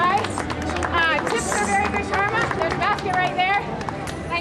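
People's voices calling out and talking excitedly, with several high calls that rise and fall in pitch.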